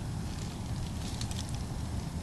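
Wind rumbling on the microphone, with a few faint crackles of dry brush being disturbed a little over a second in.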